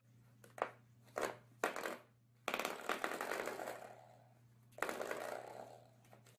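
Spring door stopper flicked by a puppy: a few short clicks, then two longer twanging boings that ring and die away, the first about two and a half seconds in and a shorter one near the end.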